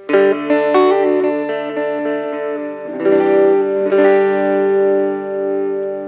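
Electric guitar (Gibson Les Paul on the neck pickup) played through a handmade half-watt cigar box amp with a 3-inch speaker, gain all the way down, giving a clean sound. A chord rings out at the start, a few single notes follow just under a second in, and a second chord comes about three seconds in and is left to ring.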